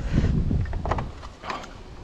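Low rumble of wind on the microphone, loudest in the first second, with a couple of faint clicks from hands working the plastic wiring plug on a washing machine's water level sensor.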